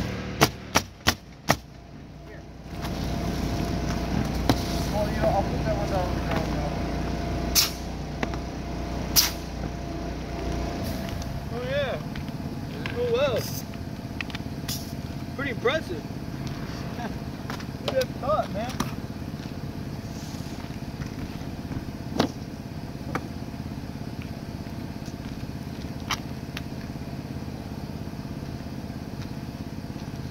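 Pneumatic roofing nailer firing a rapid string of five shots as shingles are nailed down, then single shots now and then. A steady low motor drone runs underneath.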